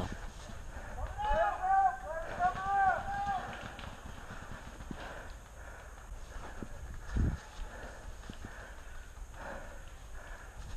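Running footsteps of a paintball player, with low thuds of feet and gear. A distant voice calls several times, rising and falling, in the first few seconds, and a single heavier thump comes about seven seconds in.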